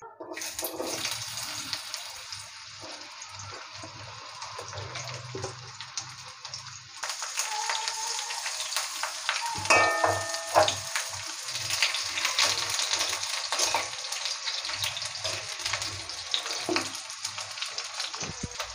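Potato wedges sizzling as they fry in hot mustard oil in a steel wok, the sizzle growing louder about seven seconds in. Around ten seconds in, a metal spatula scrapes and knocks against the wok with a brief metallic ring.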